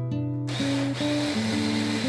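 Electric hand blender with its chopper attachment switching on about a quarter of the way in and running steadily as it grinds almonds and peanuts into a fine meal. Acoustic guitar music plays over it.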